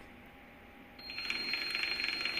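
Electric motorbike's motor starting up under throttle about a second in, spinning the chain drive and rear wheel with the bike up on a stand: a steady high whine with a fast light rattle of the steel chain and sprockets.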